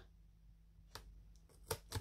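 Faint snips of scissors cutting artist tape at a box corner: one click about a second in and a couple more near the end, with quiet room tone between.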